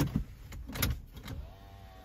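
A car's power window motor running with a faint steady whine from about one and a half seconds in. It is preceded by a couple of short knocks in the first second.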